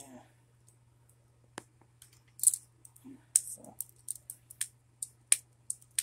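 Hard plastic Bakugan figures clicking and clacking as they are handled and snapped open, sharp clicks coming a few per second from about a second and a half in.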